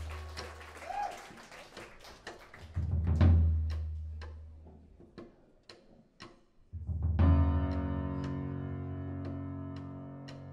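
Live band easing into a song: deep low drum swells with sharp ticks keeping time about twice a second, then about seven seconds in the band comes in with a full sustained chord.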